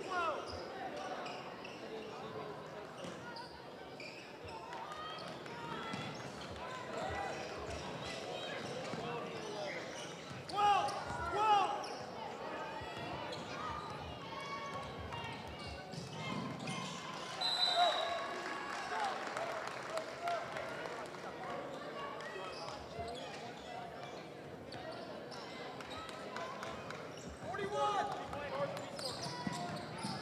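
Basketball game in a gymnasium: a ball bouncing on the hardwood court and sneaker and play noise throughout, with loud shouts from players and spectators about ten seconds in and again near the end.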